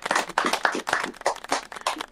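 Hand clapping: a quick, irregular run of claps.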